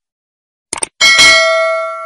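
Animated subscribe-button sound effect: two quick mouse clicks, then about a second in a bell ding that rings on and slowly fades.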